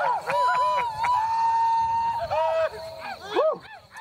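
High-pitched men's whoops and yelps, war-cry style, rising and falling, with one long held cry about a second in; they thin out near the end.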